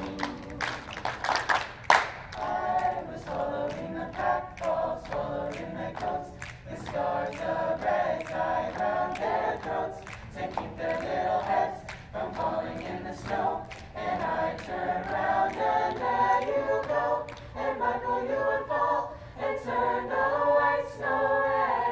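Mixed choir singing a cappella over a steady pattern of hand claps and pats, the voices coming in about two seconds in.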